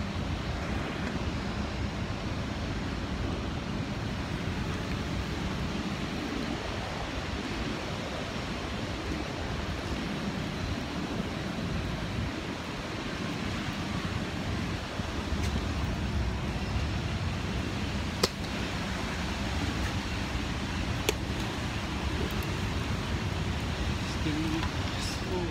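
Steady city street noise with wind rumbling on a handheld phone microphone during a walk outdoors. Two short sharp clicks come in the last third.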